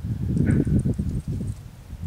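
Wind buffeting the camera microphone: a loud, rough low rumble that eases off after about a second and a half.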